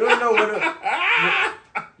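A man laughing hard: a run of short, high-pitched laughs, then a wheezing, breathy stretch about a second in and one more short laugh near the end.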